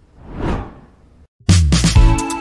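A whoosh transition sound effect swelling and fading about half a second in, followed after a brief gap by loud music with a steady beat starting near the end.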